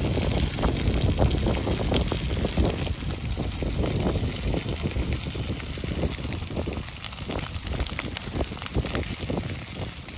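Dry prairie grass burning: dense, rapid crackling and popping over the low rush of the flames, easing a little near the end.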